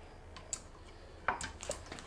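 A few light metallic clicks as a valve spring and its retainer are set down onto a valve on a cast-iron cylinder head.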